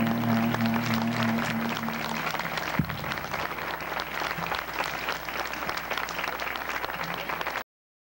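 A jazz band's final chord rings out and fades after about two seconds while the audience claps, and the clapping carries on after the music stops. There is a single sharp thump about three seconds in, and the recording cuts off suddenly just before the end.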